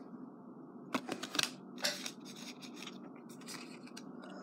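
Football trading cards being handled in a stack: a few short papery slides and flicks about a second in and again near two seconds, then faint scattered ticks.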